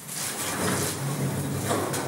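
A steady rumbling noise with a faint low hum under it, which the listeners recognise as the sound of a mine cart rolling along, though no one is there to move it.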